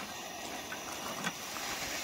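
Portable gas camping stove burning under a pot of noodles, giving a steady, even hiss.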